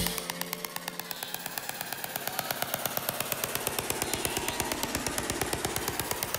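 Live electronic music thinned to a breakdown: the bass and full arrangement cut out at the start, leaving a rapid, steady ticking of drum-machine clicks over faint synth tones, quieter than the surrounding song.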